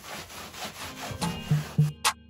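Rag rubbing a watered-down antique wax wash onto pine boards, a scratchy sound of repeated strokes. Background music comes in a little past halfway and is the loudest thing by the end.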